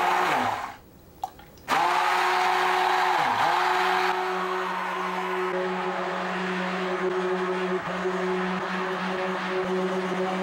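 Handheld stick blender motor blending olive pomace oil with sodium hydroxide (lye) solution to make soap. The blender runs briefly and winds down, is switched on again just under two seconds in, and then runs steadily, its pitch dipping once about three seconds in as it bogs in the thickening mixture.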